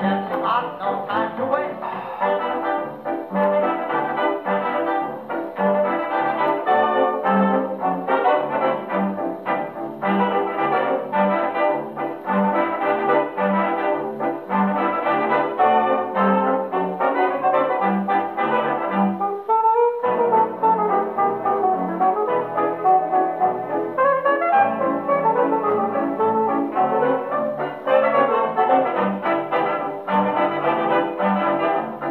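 A 1930 dance-band fox trot playing from a Victor 78 rpm shellac record on an EMG Mark Xb acoustic gramophone with an oversize horn. Brass leads over a steady low bass beat, with no singing yet. About twenty seconds in, one brief upward glide in pitch.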